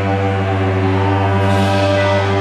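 Electric guitars and bass holding one sustained, ringing chord with no drumbeat, as a live rock song winds down to its end.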